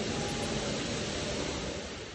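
Steady industrial hiss and hum of a die-casting cell as a robot arm lifts a single-piece cast aluminium underbody out of the press, starting to fade near the end.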